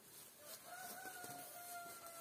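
A rooster crowing: one long held call that begins about half a second in.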